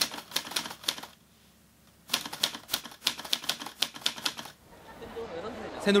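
Rapid sharp clicks in two bursts: one about a second long, then after a second of near silence a longer run of about two and a half seconds, then a faint murmur.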